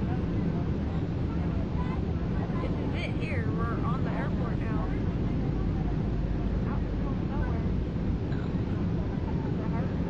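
Steady rumble and low hum of a Boeing 757 heard from inside the aircraft, with faint voices, radio or crew talk, a few seconds in.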